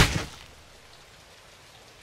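A loud thud right at the start that dies away within half a second, followed by a faint, even hiss.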